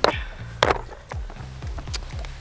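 Three sharp plastic clicks, one right at the start, one about two-thirds of a second in and one at the end: the latches and lid of a clear plastic tackle box being unclipped and opened. Background music with a low bass line plays under them.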